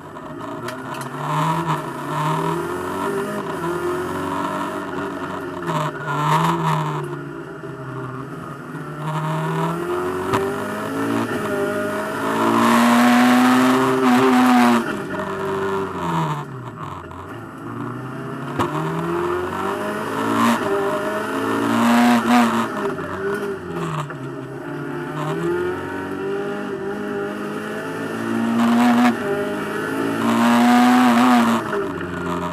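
Fiat Seicento Kit Car's small four-cylinder engine heard from inside its stripped race cabin on a tight circuit. It revs up hard through the gears, drops in pitch at each shift, and falls back under braking for the corners, over and over.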